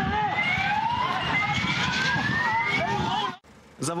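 An electronic siren sounding in repeated rising sweeps of about a second each, over street noise and voices. It cuts off suddenly near the end.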